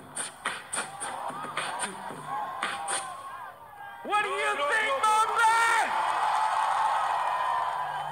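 Dance track with a sharp, regular beat that stops about three seconds in. About a second later come loud whooping shouts, which give way to an audience cheering and screaming.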